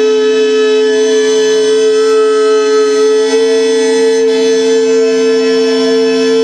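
Drone music of two long held tones: a man singing a sustained open-mouthed note that slid up into place just before and holds steady, over a lower unbroken drone.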